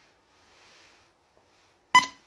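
A single short electronic beep near the end: a bright pitched tone with overtones that starts sharply and fades within a fraction of a second. Before it, near silence with a faint soft rustle.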